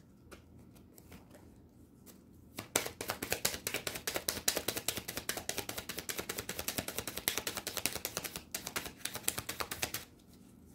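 Oracle cards being shuffled by hand: a dense run of rapid card-edge clicks starting nearly three seconds in, with a brief break near the end.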